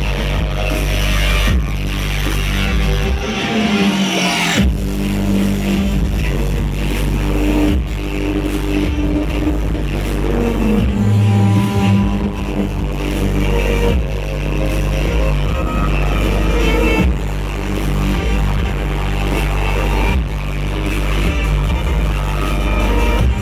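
Electric violin played live with a bow over a loud electronic dance backing track with heavy bass and a steady beat. The deep bass drops out briefly twice, about four seconds in and again around eleven seconds.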